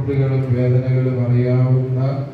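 A man's voice in a drawn-out, chant-like monotone, held on a near-steady pitch without a pause.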